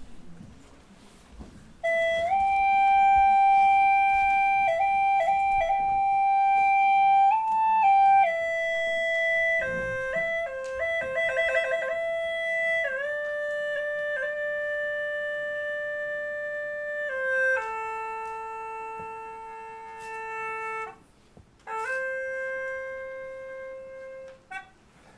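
A Chinese gourd flute (hulusi) playing a slow, unaccompanied melody of long held notes. It comes in about two seconds in, warbles quickly in a trill about halfway through, steps down in pitch, and breaks off briefly before one last held note near the end.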